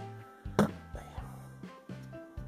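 Background music, with one sharp click of plastic about half a second in as the parts of a plastic model truck kit are handled and taken apart.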